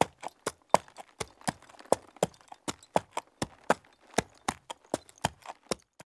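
Quick, irregular knocking taps of two hand puppets hopping on a wooden ledge, about five a second, like footsteps.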